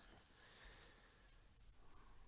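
Near silence: faint room tone, with a soft hiss during the first second.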